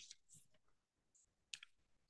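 Near silence, with a couple of faint clicks about a second and a half in.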